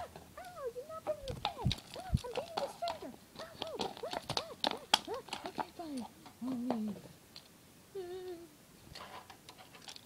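A child's voice making wordless squeals and wails that rise and fall, with sharp clicks and knocks of toys being handled.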